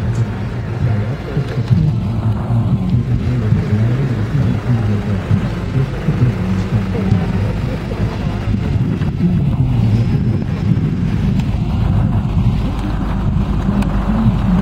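Police vehicles in a slow-moving motorcade passing close by, their engines running in a steady low rumble.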